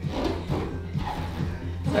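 Bare feet squeaking on a wooden floor as the dancer pivots, over background music.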